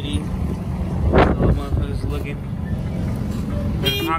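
Wind rush on the microphone and the small engine of an open three-wheeled GoCar driving along a street, a steady low rumble with a brief louder surge about a second in.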